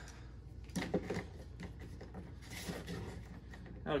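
Plastic action figure being handled and stood on a tabletop: a few faint clicks and taps of plastic.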